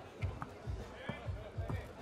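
A basketball being dribbled on the court: a run of short, low thuds a few times a second, over background music.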